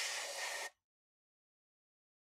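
Airbrush spraying paint: a steady hiss of air that cuts off suddenly less than a second in.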